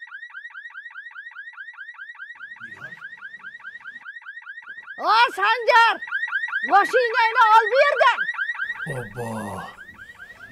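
Car alarm sounding a rapid falling chirp, about five a second, without pause. Halfway through, a woman shouts loudly over it twice.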